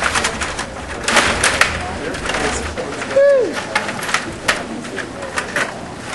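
Clattering of a Stiga rod table hockey game in play: rapid clicks and knocks of the rods, plastic players and puck. About three seconds in, one short, loud, pitched note falls sharply in pitch.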